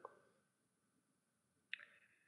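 Near silence: room tone in a pause of a recorded conversation, with one faint short click near the end.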